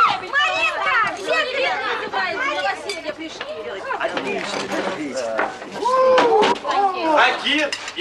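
Several people talking over one another at a dinner table, with a few clinks of glasses and cutlery around the middle.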